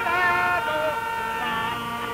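Music with several held, sustained notes that change pitch a few times and die down near the end.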